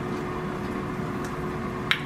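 Steady hum of a running kitchen appliance fan, with a faint steady tone through it. A single short click comes near the end.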